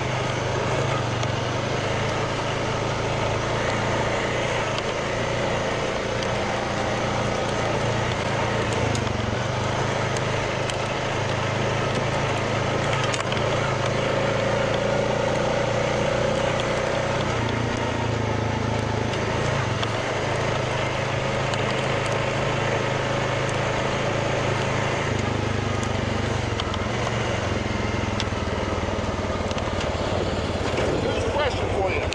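Honda Rubicon 520 ATV's single-cylinder engine running steadily under way on a dirt trail, with a steady rush of wind and track noise over it.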